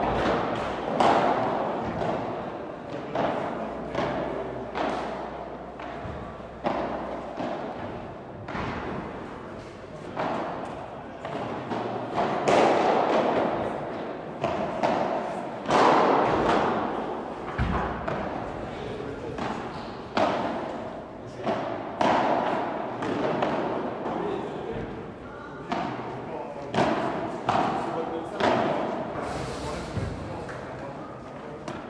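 Padel rallies: the ball is struck by solid padel rackets and bounces off the court and glass walls, giving repeated sharp knocks at irregular intervals, each ringing briefly in a large hall.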